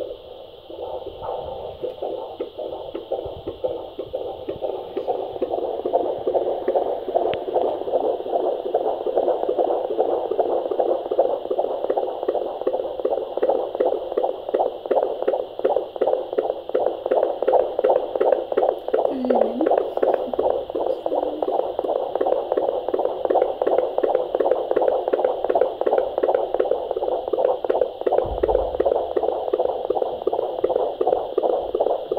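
Handheld fetal Doppler picking up the unborn baby's heartbeat through its speaker: a fast, rhythmic whooshing pulse of about three beats a second (around 175 beats a minute). It grows louder over the first few seconds as the probe settles on the heart, then holds steady.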